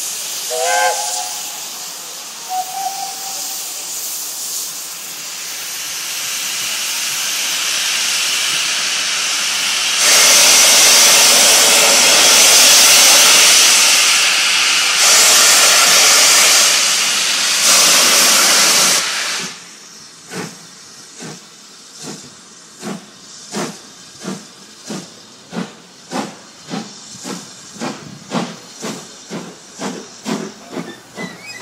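BR Standard Britannia class 4-6-2 steam locomotive, 70013 Oliver Cromwell, getting under way. There are short whistle notes about a second in, then a loud steady hiss of steam blowing from its open cylinder drain cocks that builds up and cuts off after about 19 seconds. The hiss gives way to exhaust beats that quicken steadily as the train pulls away.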